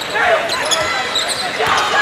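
Basketball game in play in an arena: the ball bouncing on the hardwood court, with short high squeaks and voices echoing in the hall.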